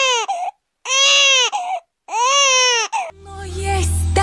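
A newborn baby crying: three separate wails about a second long, each rising then falling in pitch, with short silences between. Music with a heavy bass comes in near the end.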